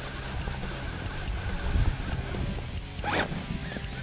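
Axial SCX10 III Bronco RC rock crawler's electric motor and drivetrain whining as it works over rock, with a short rising and falling whine about three seconds in.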